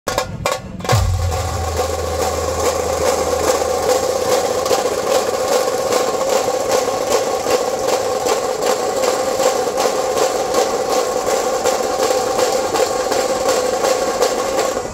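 Dhol-tasha ensemble playing: the tasha drums keep up a continuous rapid roll under a steady beat of dhol strikes. The roll sets in about a second in, after a few scattered hits.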